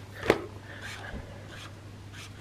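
A Tombow pen is uncapped with a click about a third of a second in, then its tip is drawn quietly across the paper.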